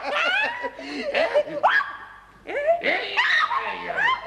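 A man and a woman laughing together in bursts, with a short lull about two seconds in.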